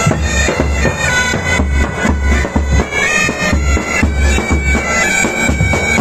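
Military pipe band playing: bagpipes sounding a tune over their steady drone, with a bass drum beating about twice a second.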